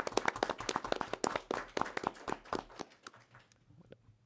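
Applause from a small audience: separate hand claps that thin out and die away about three seconds in.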